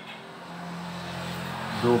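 A steady low mechanical hum under a broad rushing noise that grows gradually louder.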